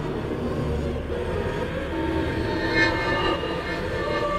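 Dark ambient horror soundscape: a low rumbling drone, with a brief higher tone about three seconds in.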